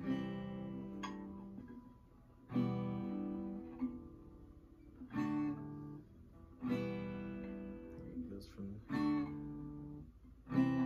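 Acoustic guitar strummed slowly, one chord about every one and a half to two seconds, each left to ring out and fade before the next: a beginner's unhurried chord practice.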